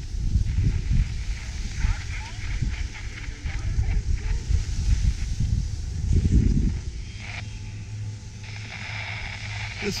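Wind buffeting an action camera's microphone on a downhill ski run, an uneven low rumble, with the scrape of skis over groomed snow.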